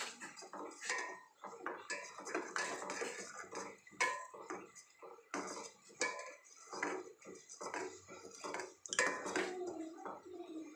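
Metal spoon clinking and scraping against a stainless steel pan while stirring milk, in irregular strokes with a few sharper knocks.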